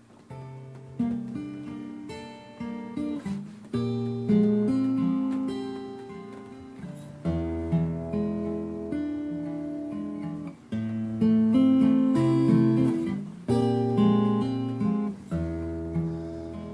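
Acoustic guitar playing the instrumental opening of a song: chords plucked and strummed with low bass notes, each ringing out and fading, with a new chord every second or two.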